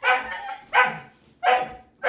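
Labradoodle puppy barking: three short, high barks, evenly spaced.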